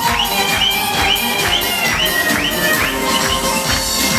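Live Turkish music ensemble of oud, violin, kanun and hand drums playing an instrumental passage with a steady dance beat and a melodic figure repeating about twice a second.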